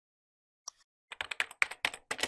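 Computer keyboard typing: a quick run of keystroke clicks starting about a second in, as text is typed into a search box.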